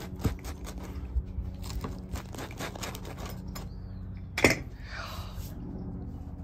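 Pizza cutter wheel cutting through a deep-dish pizza's crust on a stone board: a run of small crackling clicks, with one sharp knock about four and a half seconds in.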